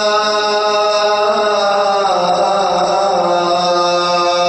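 A man's voice chanting long, drawn-out held notes into a microphone in a majlis recitation, the note stepping down in pitch about halfway through.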